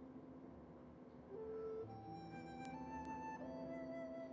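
Slow, soft instrumental music of long held notes, a higher melody moving over a sustained low note.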